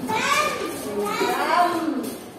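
Several young children's voices at once, overlapping and high-pitched, as a class of small children talk and call out together.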